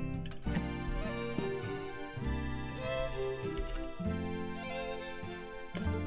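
Light instrumental background music with a melody over a bass line that moves from note to note.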